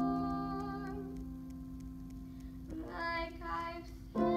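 A grand piano chord, struck just before, rings on and slowly fades; about three seconds in, a young girl sings a short phrase over it.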